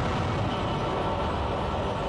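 A car engine running as a car drives in.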